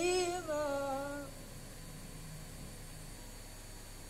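A boy's melodic Quran recitation (tilawah): one held, wavering note that ends about a second in, followed by a pause with no voice.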